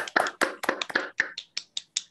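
Applause from a small group: quick claps at first, thinning to a few single claps near the end and then stopping.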